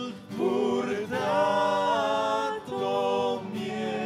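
A worship team and congregation singing a slow hymn: a man's and women's voices hold long notes over acoustic guitar, with short breaks between phrases.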